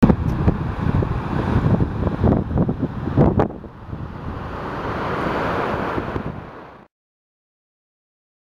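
Wind buffeting a phone microphone in gusts, with a couple of sharp knocks about three seconds in. It is followed by a smoother rushing noise that swells and then fades, and the sound cuts off abruptly about a second before the end.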